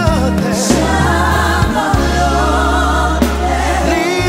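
A man singing, his voice sliding up and down through a long, winding melodic run, over backing music.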